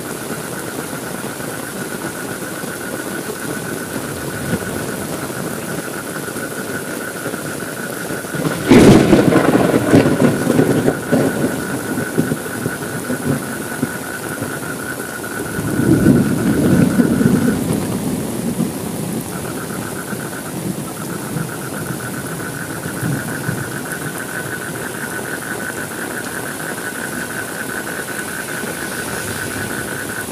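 Steady heavy rain with thunder. A sharp crack about nine seconds in rolls into a few seconds of loud rumble, and a second, slightly softer rumble follows about sixteen seconds in.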